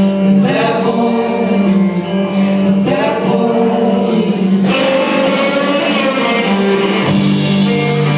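Live rock band playing: electric guitars and drums with a singer, heard from the audience in a large, echoing room.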